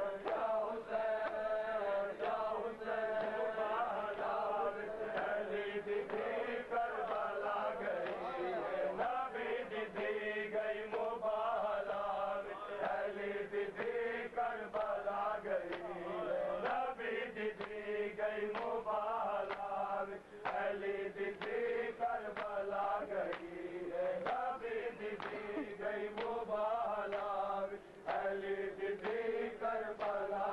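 A noha, a mourning lament, chanted by male voices in repeated phrases, with the sharp slaps of a crowd of men beating their bare chests in matam throughout.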